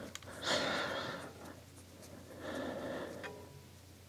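A person breathing softly: two quiet breaths, about two seconds apart.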